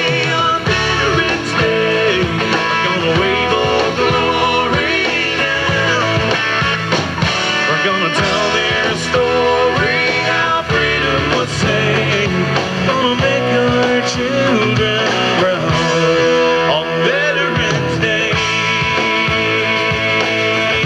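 Rock band music with guitar, playing steadily.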